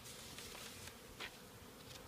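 Faint, steady buzzing of honeybees flying around an open hive, with a light tap about a second in.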